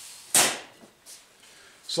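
A wooden guitar neck set down on a metal-topped workbench: one sharp clunk about a third of a second in, followed by a little faint handling noise.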